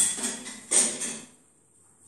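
Puzzle pieces knocked and slid against each other on a glass tabletop as they are pushed together: a sharp knock, then two short scraping rustles within the first second and a half.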